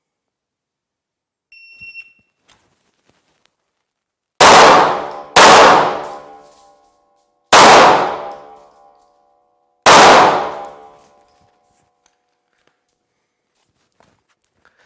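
A short electronic beep, then four pistol shots echoing in an indoor range. The first two come about a second apart at the near target, and the last two come slower, about two seconds apart, at the far target: a deliberately faster rhythm on the close target and a slower one on the distant target to keep aiming accurate.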